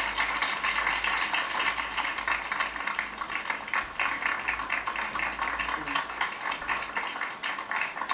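Studio audience applauding steadily, a dense crackle of many hands clapping, heard through a television's speaker.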